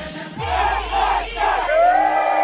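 A large group of people shouting and cheering together in several short yells. Music comes in near the end.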